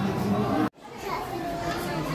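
Background chatter of a crowd with children's voices, echoing indoors. It cuts out abruptly for a moment about a third of the way in, then the murmur resumes.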